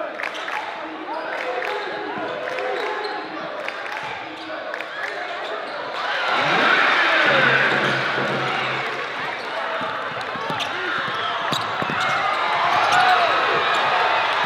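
A basketball being dribbled on a gym's hardwood floor, sharp repeated bounces, under the voices and shouts of players and spectators that grow louder about six seconds in.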